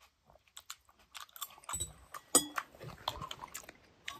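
Close-up chewing and crunching of salad: scattered small clicks at first, then denser crunching from about a second in, loudest around two seconds in.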